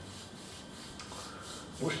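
Massage therapist's hands rubbing over a man's bare back, a soft friction of palms on skin in repeated strokes.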